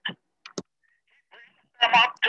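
Speech heard through a video-call connection: short fragments of talk, a pause of about a second, then talking resumes near the end.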